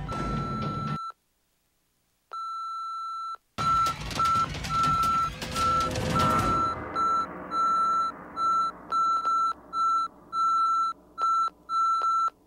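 A high electronic beep tone sounds briefly, stops for about a second, then returns as an irregular string of short and long beeps. A loud rushing noise sits under the beeps in the middle and then fades away.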